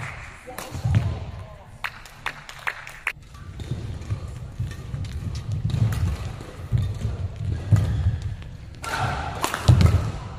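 Badminton rally in a large hall: sharp cracks of rackets striking the shuttlecock at irregular intervals, over heavy thuds of the players' footsteps and lunges on the court mat.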